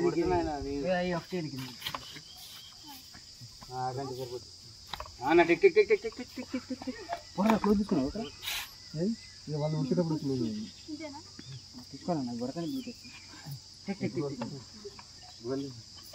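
Voices talking in short bursts over a steady, high-pitched drone of insects.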